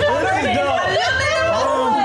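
Several people talking and laughing over one another, with a low steady rumble underneath from the rocket launch playing in the film.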